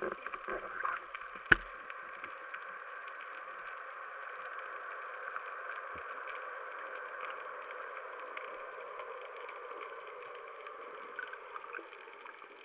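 Muffled underwater noise picked up through a camera's waterproof housing: a steady hiss, with a few knocks in the first second and one sharp click about a second and a half in.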